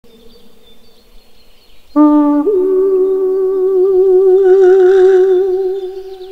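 A man's voice comes in suddenly about two seconds in with one long, clear hummed note. It rises a step almost at once, then is held with a slight waver and eases off near the end.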